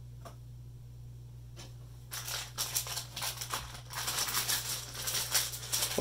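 Crinkly plastic blind-bag packaging rustling and crackling in irregular bursts as a Hot Wheels Mystery Model packet is handled and opened, starting about two seconds in, over a low steady hum.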